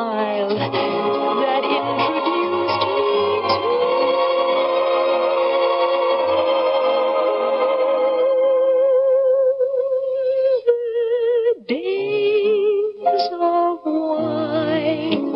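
Female voice singing a slow ballad over grand piano accompaniment, holding one long note with a wide vibrato for several seconds. Near the end her pitch dips sharply and comes back up as the line goes on.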